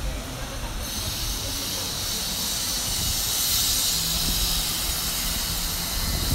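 A high-pitched hiss starts suddenly about a second in, swells to its loudest midway and eases off near the end, over a low rumble of street noise.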